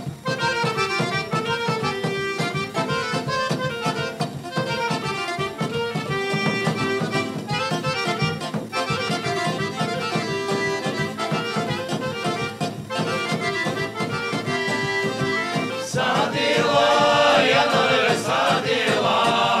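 Bulgarian folk band playing a lively instrumental opening: accordion leading, with clarinet and tambura, over a steady beat from a tapan drum. About two seconds before the end, a men's folk group comes in singing together.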